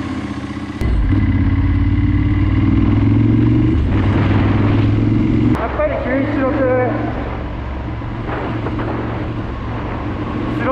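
Ducati 916's V-twin engine heard from the saddle, running strongly with a slight rise in pitch as it pulls, then dropping to a quieter cruising rumble for the second half, with muffled speech over it.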